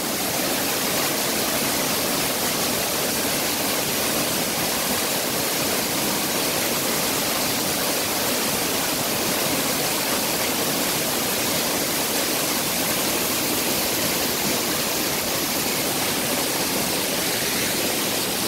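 Waterfall in heavy flow: a steady, loud rush of pouring water, running high after recent rain.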